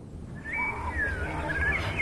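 A few short whistled animal calls, one held and one gliding down in pitch, over a low rumble that slowly grows.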